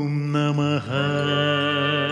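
Kannada devotional suprabhatha music: a male voice chants long held notes with a short dip and swoop down in pitch just under a second in, over a steady low drone.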